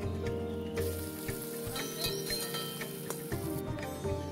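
Sliced onions sizzling in hot oil in an iron wok as a spatula stirs them; the sizzle swells about a second in and drops away shortly before the end. Background music plays along.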